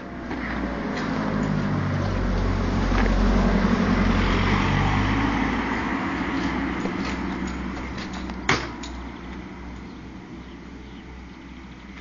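A car driving past, its engine and tyre noise swelling to a peak about three to four seconds in and then fading slowly as it moves away. A single sharp click sounds about eight and a half seconds in.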